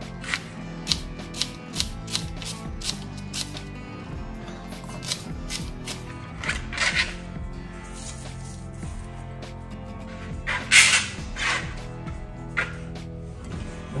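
Knife cutting a red onion into half rings on a plastic cutting board, sharp taps about two a second for the first few seconds. Later come a few louder handling noises as the onion rings are pulled apart by hand over a glass bowl. Background music plays throughout.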